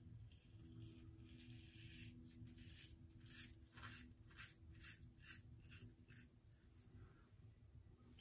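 A vintage Gillette Black Beauty adjustable safety razor with a Voskhod blade scraping through lathered stubble: about a dozen short, faint strokes of blade feedback, the last about six and a half seconds in.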